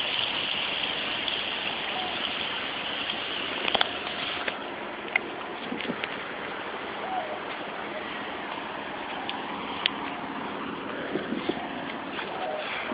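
Steady splashing of water from a tiered garden fountain, an even rushing hiss, with a few light clicks.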